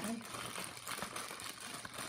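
Thin clear plastic bag crinkling as it is handled and worked open by hand, a soft irregular crackle.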